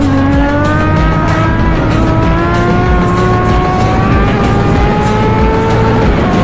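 Suzuki GSX-R1000's inline-four engine pulling hard under acceleration, its pitch climbing steadily through one long gear. Heavy wind buffets the microphone underneath.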